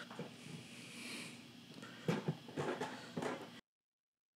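Faint clicks and rattles of small plastic and metal parts being handled as the white blade retainer and cutters are lifted out of a Pitbull Gold skull shaver's four-blade rotary head, the clicks coming in a short cluster about two seconds in. Near the end the sound cuts off abruptly to silence.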